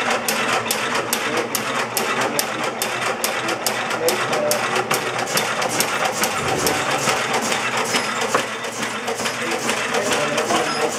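An old cast-iron taffy cutting-and-wrapping machine running, its gears and cutters clattering in a steady rhythm of about three clicks a second as taffy is cut into pieces and wrapped in paper.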